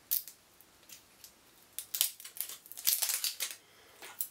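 Fingernails prying at the plastic cap of a cosmetic colour stick, giving short sharp clicks and scrapes: one near the start, then a cluster around two seconds in and another around three seconds in as it is worked open.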